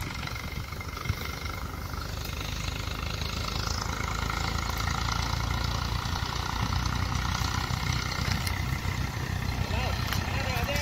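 Tractor-driven wheat thresher running steadily, the tractor's diesel engine droning evenly as it powers the threshing drum.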